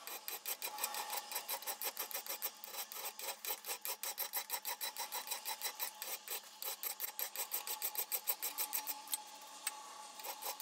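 Flat hand file scraping across an A2 tool-steel workpiece clamped in a vise, in quick, even strokes of about five or six a second. Two light ticks sound near the end.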